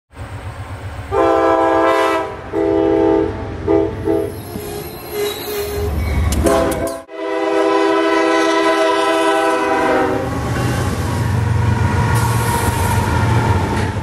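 Locomotive air horn sounding several blasts, two longer ones and a short one, then a longer blast of about three seconds, over the low rumble of the train, which carries on after the horn stops.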